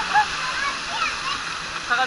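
Water from a play structure's jets and buckets spraying and splashing down in a steady rush, with children's short shouts and squeals over it.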